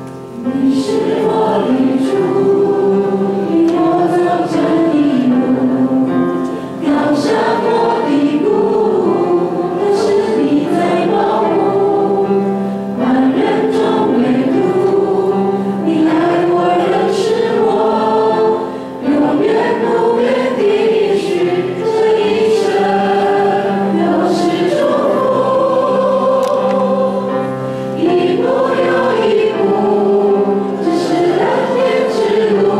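Several voices singing a hymn into microphones, with grand piano accompaniment, the singing starting about half a second in and pausing briefly between phrases.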